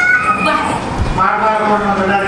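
A man preaching into a microphone, his amplified voice drawn out in long, sliding tones, with a short pause about a second in.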